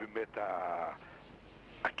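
A man's voice holding a drawn-out, wavering hesitation vowel for about half a second, after a couple of short syllables. A short sharp click comes near the end.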